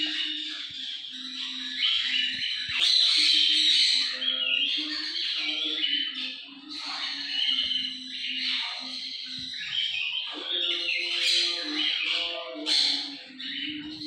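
Birds squawking and chattering continuously, with several louder squawks standing out, over background music carrying a low melody.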